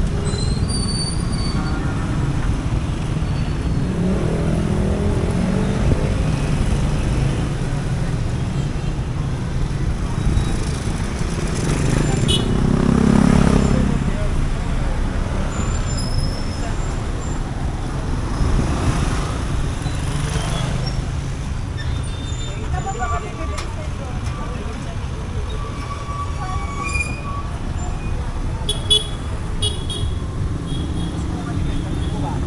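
Roadside street traffic: a steady rumble of motorcycle and car engines, with vehicles passing close by, loudest about halfway through, and occasional short horn toots.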